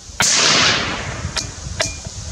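A single shot from a Savage 93R17 bolt-action rifle in .17 HMR rimfire: a sharp crack just after the start, then about a second of echoing rumble dying away. Two small clicks follow.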